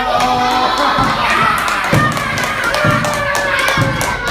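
Children shouting and cheering over music, with a deep thud about once a second.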